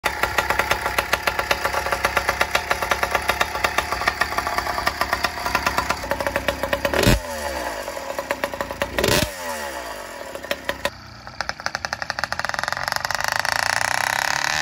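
YD100 two-stroke motorized bicycle engine running with a rapid, even firing rattle. About halfway through the revs drop off sharply, and again two seconds later, then a smoother, steadier engine note carries to the end.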